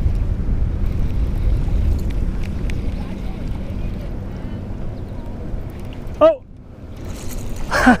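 Wind buffeting the microphone, a low rumble that eases off about six seconds in. A short rising squeak comes just before it drops away.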